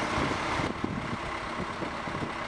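Diesel engine of heavy site machinery running steadily, with an uneven low rumble that drops slightly in level under a second in.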